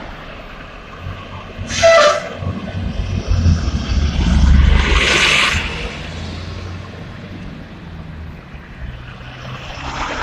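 Street traffic: a motor vehicle passes close by, its engine rumble and tyre hiss building from about three seconds in, loudest around five seconds, then fading. About two seconds in there is a brief, loud, pitched toot.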